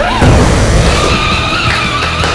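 Car tire-screech sound effect, a sustained squeal over a low rumble, over background music.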